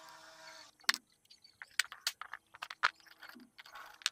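Irregular sharp clicks and taps of a thin knife blade working into a hard plastic toy tractor body. The loudest snap comes about a second in, and smaller clicks follow over the next few seconds.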